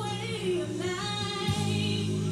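Gospel song: voices singing over held low chords, the chord changing about one and a half seconds in.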